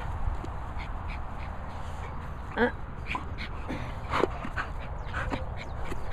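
Dog giving two short whining calls, about two and a half and four seconds in, over a steady wind rumble on the microphone.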